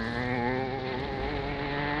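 Steady buzzing hum of an anime magic-barrier sound effect, one held pitch with a slight waver, as the glowing barrier is raised.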